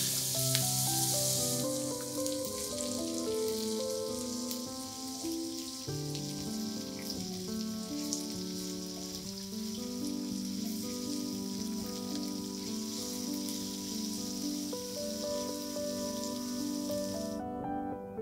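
Sliced red onions sizzling in hot oil in a frying pan. The sizzle is loudest as they are tipped in, then settles to a steady sizzle while they are stirred, and it stops near the end. Gentle background music plays throughout.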